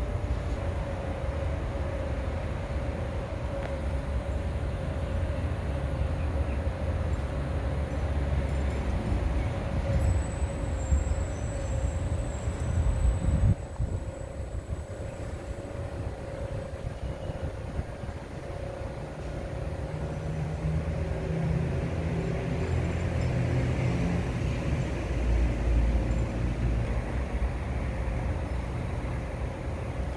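Steady low rumble of outdoor background noise with a constant mid-pitched hum running under it. The rumble swells and dips unevenly, with a brief faint high whine about ten seconds in.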